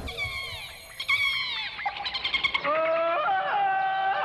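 Jungle animal-call sound effects in a show's title sequence: two calls slide downward in pitch in the first two seconds, then a rapid chattering run, then held wailing calls that bend up and down.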